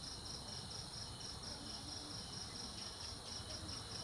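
A cricket chirping steadily in fast, even pulses, about five or six a second.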